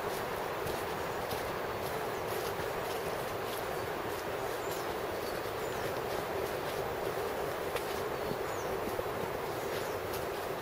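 Steady outdoor ambience: an even rushing noise throughout, with a few faint high bird chirps and light ticks over it.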